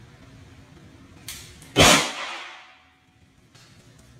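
Handheld confetti popper going off once with a loud bang about two seconds in, just after a smaller snap, the bang dying away over about a second.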